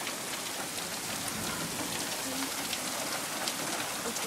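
Steady rain falling during a thunderstorm, with scattered small taps of individual drops.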